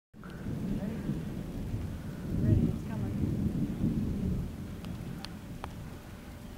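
Thunder rumbling low, swelling to its loudest about two and a half seconds in and then fading. A few faint clicks come near the end.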